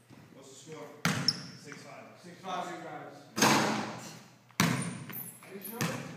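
Basketball bouncing on a hardwood gym floor: four sharp, irregularly spaced bangs, each echoing through the large hall.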